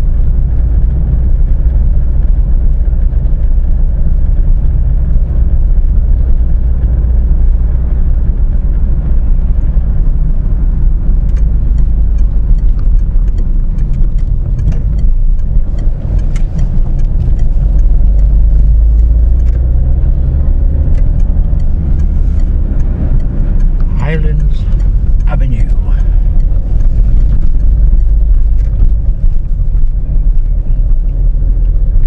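Car driving on town streets heard from inside the cabin: a loud, steady low rumble of engine and road noise.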